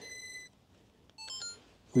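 Electronic beeps from the drone and its camera gear as they power up: a steady high beep that fades out in the first half second, then, after a short silence, a quick run of short tones stepping up and down in pitch.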